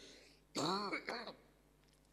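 A man clearing his throat once into a microphone, about half a second in.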